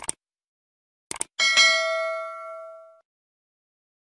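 Subscribe-button sound effect: a mouse click, then a quick double click about a second in, followed by a bright notification bell ding that rings and fades away over about a second and a half.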